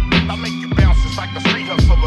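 Boom bap hip hop instrumental beat: heavy kick and snare drum hits in a slow, steady pattern over a sampled backing loop.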